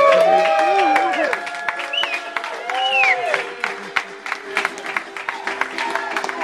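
Audience cheering and whooping, then clapping, as a sung ukulele number ends. Held ukulele notes ring under the applause.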